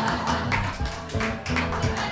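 Live acoustic band playing the start of a song: acoustic guitars strumming over bass notes, with drums keeping time.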